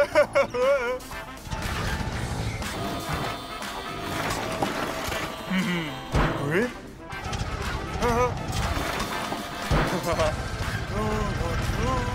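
Cartoon soundtrack: background music with a character's wordless voice sounds, and a crash about six seconds in as a trash can is tipped into a garbage truck.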